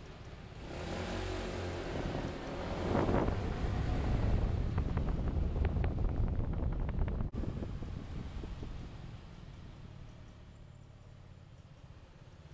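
Road vehicle driving noise, engine and tyre sound without a clear pitch, swelling over a few seconds and then fading away. There is a short break in the sound a little past the middle.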